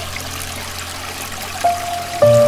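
Steady running water of a stream. A single soft piano note comes in near the end and holds.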